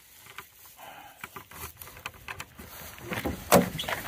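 Faint handling noise and scattered light clicks, then a few louder clacks about three and a half seconds in as a dog-trailer compartment door is unlatched and opened.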